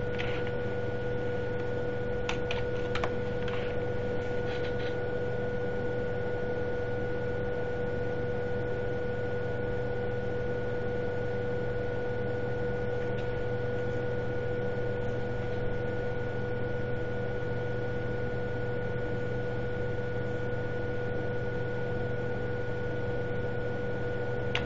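Steady electrical hum with hiss underneath, two thin constant tones over a low drone, and a few faint clicks a few seconds in.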